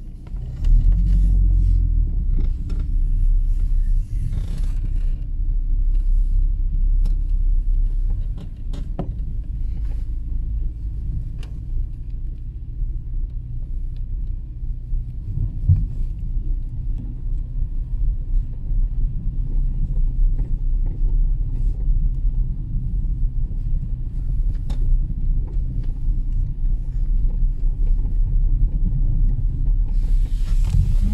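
A car driving along a rough village street, heard from inside the cabin: low, steady engine and road rumble that rises sharply about half a second in as the car moves off, with a few faint knocks.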